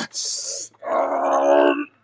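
A man's voice making werewolf noises: a short, harsh, breathy exhale, then a strained, held vocal cry about a second long.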